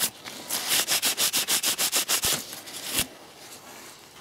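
Quick back-and-forth scrubbing, about seven strokes a second, as acrylic swarf is cleaned out of a freshly tapped M5 thread in a perspex sheet with IPA. The scrubbing stops about three seconds in with a knock.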